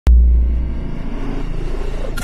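Logo-intro sound effect: a sudden deep bass boom at the very start that fades over about a second into a low rumble, under a swelling whoosh.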